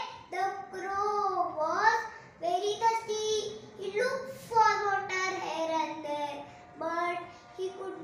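A young girl singing unaccompanied, in several phrases of long held notes with short breaks between them.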